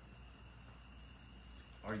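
A pause in talk filled by a faint, steady high-pitched background whine over a low hum. A man's voice starts right at the end.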